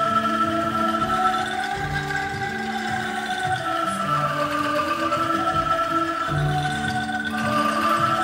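Ensemble of bamboo angklung being shaken, playing a slow tune in sustained, trembling chords that change every second or two.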